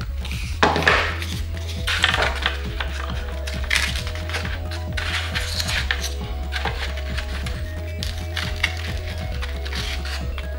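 Close-up handling of foam board parts as they are glued and pressed together: a run of small clicks, taps and rubs, with a louder rub about a second in. Background music plays underneath.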